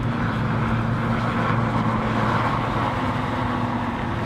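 The 1965 Corvair Crown's mid-mounted 283 cubic inch V8 running at a steady engine speed while the car drives along.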